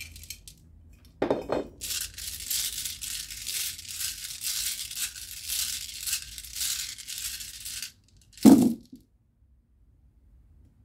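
A handful of small stone runes tipped out of a brass bowl into the hand about a second in, then shaken together in cupped hands, rattling and clicking steadily for about six seconds. Near the end they are cast onto a cloth-covered table with one loud thump, the loudest sound, followed by quiet.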